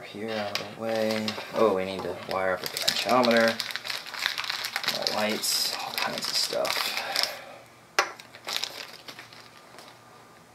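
Crinkling and rustling of a small paper component packet being handled and opened, in quick dense crackles for a few seconds, followed by a single sharp click.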